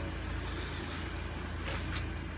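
Steady low background rumble, with a brief hiss near the end.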